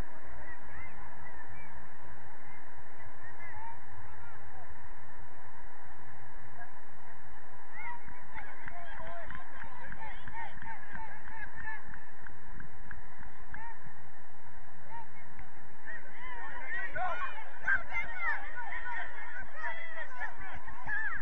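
A flock of birds calling, many short overlapping calls that grow thicker about eight seconds in and busiest near the end.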